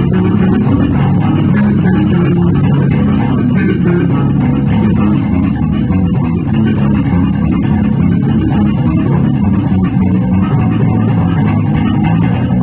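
Four-string electric bass guitar played through an amplifier, plucked in a continuous jazz-funk groove of quick low notes.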